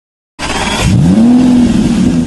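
Car engine sound effect: it starts suddenly with a rush of noise, then the engine note rises in pitch and holds steady at a high rev.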